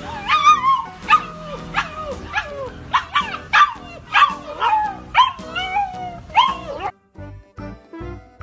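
A fluffy husky-type puppy barking in a run of short, high yelping calls, each falling in pitch, about two a second. The calls stop abruptly about seven seconds in and background music follows.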